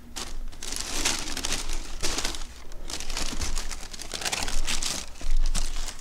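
White packing tissue paper rustling and crinkling in irregular bursts as it is handled and pulled back inside a cardboard box.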